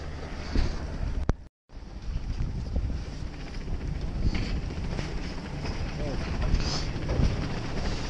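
Wind buffeting the camera microphone in a snowstorm: a dense, dull low rumble. It drops out to silence for a moment about a second and a half in.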